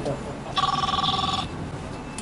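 A telephone ringing: one steady electronic ring about a second long in the middle, part of a ring that repeats about every two seconds.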